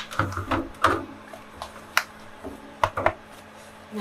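Frozen rabbit hides being handled in a freezer's wire basket: scattered knocks and clicks with some rustling, the sharpest about two seconds in.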